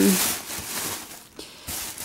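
A thin plastic carrier bag rustling as a cardboard box is pulled out of it. The rustle is loudest in the first second, then fades, with a couple of soft knocks.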